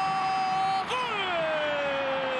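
A football commentator's drawn-out goal cry, a held 'Gooool', over stadium crowd noise. One high note is held level, then a fresh breath just under a second in starts higher and slides slowly downward.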